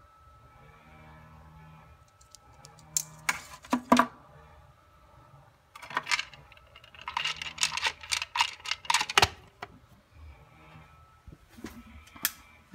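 Handling noise of a plastic-cased water-pump run capacitor and its wires being worked into the pump's terminal box: scattered sharp clicks and knocks, with a dense run of rapid clicking for a couple of seconds past the middle.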